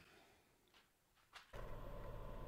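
Near silence, then about one and a half seconds in a wood lathe's motor switches on and runs with a steady low hum and a faint thin whine as the burl blank spins up.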